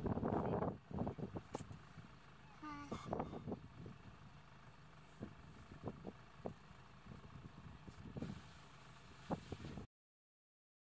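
Muffled, low voices and scattered handling knocks over a low steady rumble, loudest in the first second; the sound cuts off abruptly just before the end.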